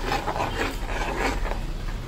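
A plastic ladle stirring thick white sauce, rubbing and scraping against the bottom and sides of a metal pan.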